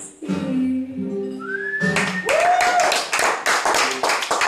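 A song ends on its last sung notes over a nylon-string classical guitar. About two seconds in, the audience breaks into clapping, with a rising whistle.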